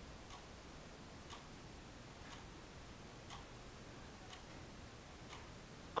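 A clock ticking faintly and evenly, about once a second.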